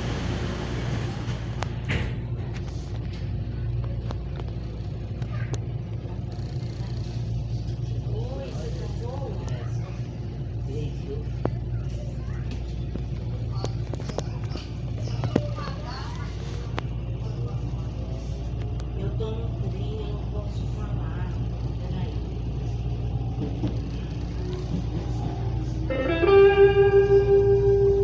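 Interior of a CPTM Line 11 Coral commuter train pulling away from a station and running, a steady low hum of the train underneath faint voices. Near the end, a loud steady tone sounds for about two seconds.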